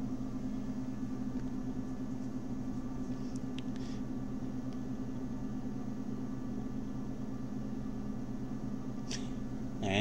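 Steady low hum of background room tone, with a few faint brief clicks.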